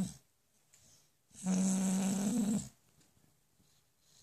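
A sleeping pit bull-type dog snoring: the tail of one snore at the very start, then one steady, pitched snore about a second long in the middle.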